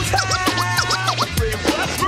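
Hip hop beat with turntable scratching: fast back-and-forth pitch sweeps over a steady bass line, with no rapping.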